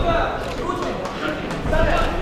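Indistinct men's voices talking and calling out over crowd noise in a large hall.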